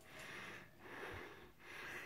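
A person's faint breathing: three soft breaths in a row.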